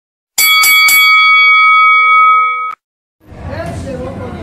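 A boxing ring bell struck three times in quick succession, ringing on and then cut off abruptly. After a short silence, the murmur of voices and background noise of the venue begins.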